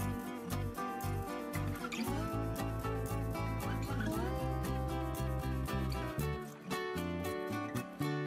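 Instrumental background music with a steady beat and a stepping bass line, dipping briefly near the end.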